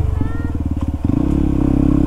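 Yamaha WR155R's single-cylinder engine running at low revs with distinct, evenly spaced firing pulses. About a second in it picks up to a steadier, smoother note.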